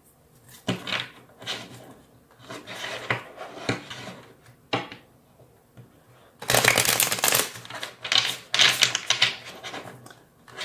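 A deck of tarot cards being shuffled by hand: scattered taps and slides of cards, then two louder stretches of rapid card clatter, each about a second long, a little past the middle.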